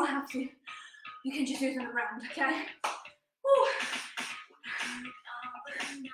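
A woman's voice talking in short phrases, with brief pauses between them.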